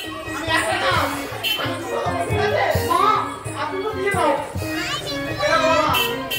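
Live Bengali folk music for a gajon performance: a melody of held, stepping notes over drum beats, with voices rising and falling over it and a crowd of children chattering.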